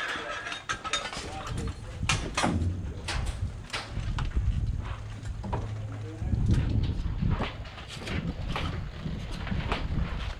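Scattered metallic clicks and knocks of firearms being handled at a loading table, with voices in the background. A steady low hum comes in about two and a half seconds in and gives way to a rougher low rumble about six seconds in.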